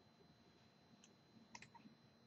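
Near silence: faint room tone with a thin steady high whine, broken by a few faint clicks, one about a second in and a small cluster near the end.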